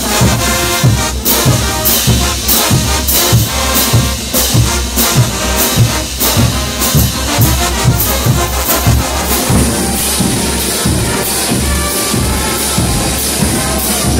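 Bolivian brass band playing a morenada: trumpets and trombones over crash cymbals and bass drum beating about twice a second.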